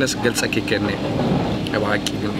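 A man talking, over a steady low hum in the background.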